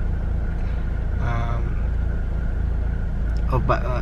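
Steady low rumble of a car engine idling, heard from inside the cabin.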